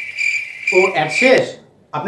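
A steady high-pitched trill that stops about a second and a half in, with a man's voice briefly over its last half second.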